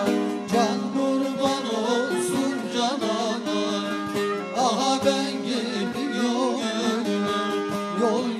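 A man singing a Turkish folk song (türkü) in long, wavering, ornamented notes, accompanied by a plucked bağlama (saz).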